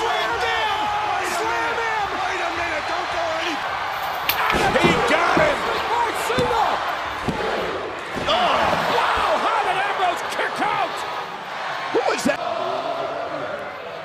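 Wrestling broadcast soundtrack with excited voices throughout and heavy body slams onto a mat about four to five seconds in and again near twelve seconds. The first slam lands a gorilla press slam.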